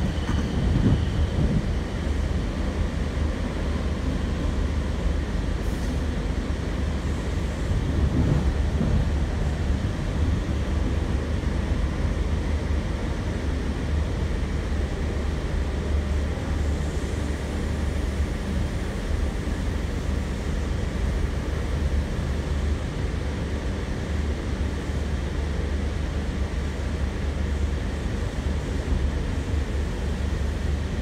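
Interior of a Sydney Trains K set double-deck electric train moving at speed: a steady low rumble of wheels on rail and running gear with no break.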